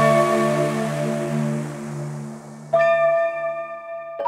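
Electronic music outro: sustained synth chords over a low bass note fade away, then a single bright, bell-like note strikes about three-quarters of the way in and rings on, dying away.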